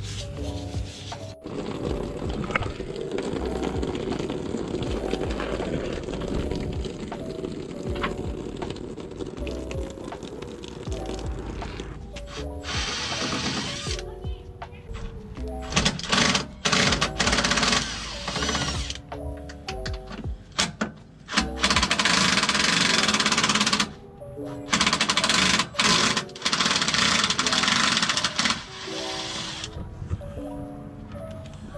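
Background music throughout; from about halfway, a cordless impact wrench hammering under the car in several loud bursts of one to three seconds each.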